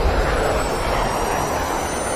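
Cinematic sound effect of jet aircraft rushing overhead: a loud, steady roar with thin, high whistling tones over it.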